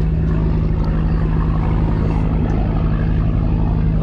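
Fast ferry's engines running steadily, a constant low drone, as the boat turns to set its heading out of the harbour, with a steady hiss of water and air over it.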